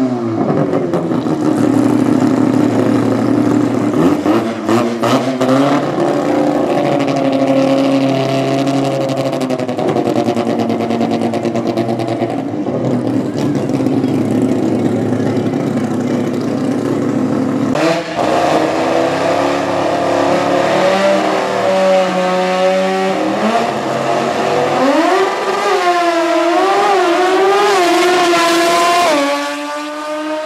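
Rotary engine of a naturally aspirated Toyota Starlet drag car. Its revs fall at the start, and it then runs at a steady raised idle for a long stretch. Near the end it revs up in several rising sweeps, then drops away suddenly.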